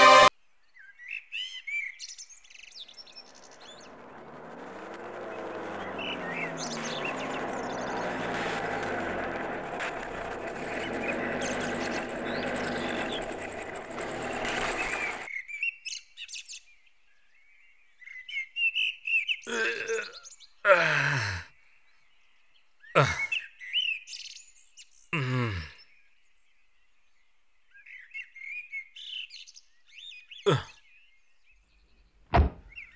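Birds chirping in short bursts. Partway through there is a stretch of steady background sound. In the second half come four short, loud sounds that fall in pitch.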